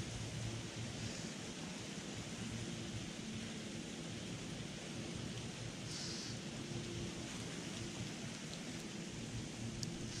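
Steady outdoor background noise: an even rushing hiss with a low rumble and a faint low hum, and a brief high hiss about six seconds in.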